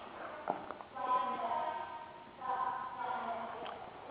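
A faint, distant voice talks in the background in two stretches of about a second each, with a light tap about half a second in.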